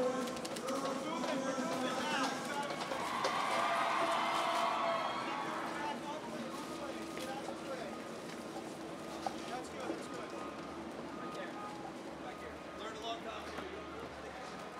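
Indistinct chatter of several people talking, with no clear words. It is louder in the first few seconds and fainter after that.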